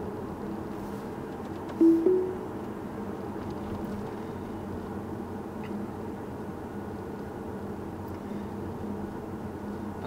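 Steady tyre and road noise heard inside the cabin of a 2017 Tesla Model S, an electric car with no engine note, driving at about 40 km/h. About two seconds in comes a brief two-note tone stepping slightly up in pitch, the loudest sound in the stretch.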